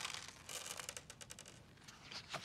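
Faint handling noise: a quick run of small clicks and a light rustle, about half a second in and lasting under a second.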